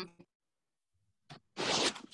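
Video-call audio dropping out to dead silence for about a second, then a click and a short burst of loud scratchy noise, over a remote participant's failing connection.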